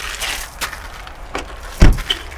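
Car door swung shut with one heavy thud near the end, after a few lighter clicks.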